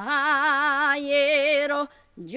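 A woman singing a folk song unaccompanied in a strong voice with a wide vibrato, sliding up into a long held note at the start and stopping shortly before the end.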